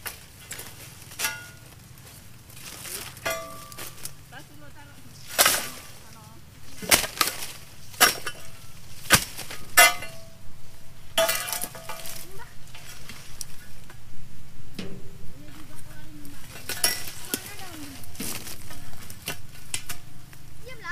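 Steel dodos chisel on a pole chopping into the stalks of a young oil palm: irregular sharp metallic strikes and cracks, the hardest blows about halfway through, followed by a denser run of lighter knocks.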